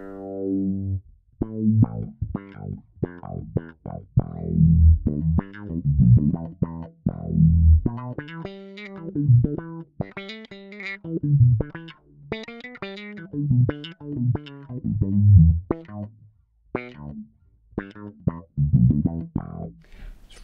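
Fender Mustang PJ electric bass played through a DOD FX25 envelope filter (auto-wah), with the sensitivity backed off from its maximum. It plays a riff of short plucked notes, with higher ringing notes and double stops through the middle.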